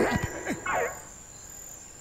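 Crickets chirping steadily as jungle background ambience. In the first second there are a few brief sounds that fall in pitch.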